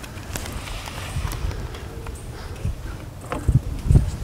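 Scattered light clicks and knocks from plastic lure packets and a plastic tackle box being handled, over a steady low rumble, with a couple of heavier thumps near the end.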